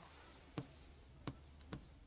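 Faint taps and strokes of a pen tip on a writing board as a word is written: three short ticks, over a low steady room hum.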